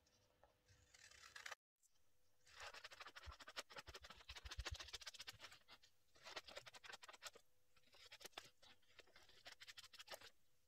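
Scissors cutting through pattern paper: faint, crisp scratchy snipping in three spells, the longest starting about two and a half seconds in.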